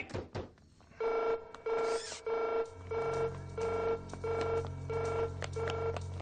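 Cartoon soundtrack: an electronic tone pulsing evenly about one and a half times a second over a steady higher tone, with a low hum coming in about halfway through.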